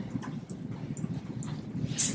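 A pause in speech: quiet room hum with a few faint footsteps on a carpeted floor.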